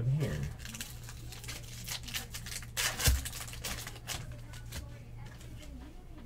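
Glossy trading cards handled on a tabletop: a run of light clicks, slides and rustles as cards are moved and gathered into a stack, with a louder knock about three seconds in. A faint steady low hum runs underneath.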